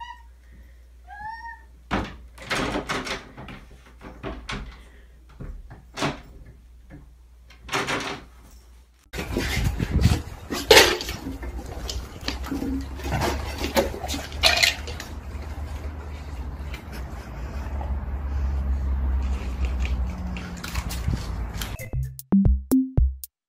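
A cat meows twice, then paws at a closed door, making a string of knocks and rattles. About nine seconds in, the sound changes to a louder steady low hum with scattered clatters and knocks.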